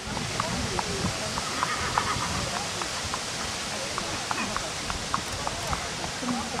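Hoofbeats of a ridden horse moving over a sand arena, with voices in the background.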